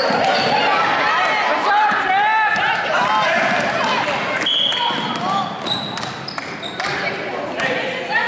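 A basketball dribbled on a hardwood gym floor, a run of sharp bounces, under spectators' and players' voices echoing in the gym.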